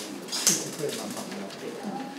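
Low, indistinct chatter of people in a room, with a brief sharp noise about half a second in.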